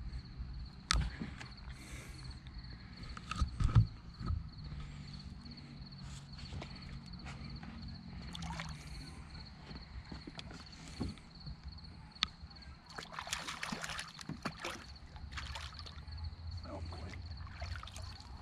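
Water splashing at the side of a metal boat as a hooked carp is brought up at night, with scattered knocks and bumps on the hull; the splashing is loudest about two-thirds of the way through and again near the end. A steady, evenly pulsing insect trill runs underneath.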